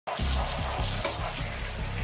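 Water jet spraying onto smartphones lying in a plastic tray: a steady, even hiss of splashing water, with a low regular beat underneath.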